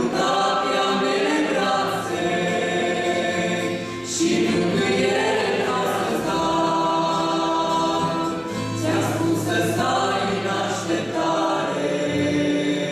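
A Romanian Christian worship song sung in long held phrases, with acoustic guitar accompaniment.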